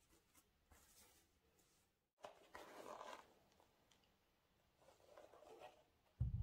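Faint rustling and scuffing of cotton-gloved hands handling a pair of trainers and their foam insole, the loudest rustle coming about two and a half seconds in.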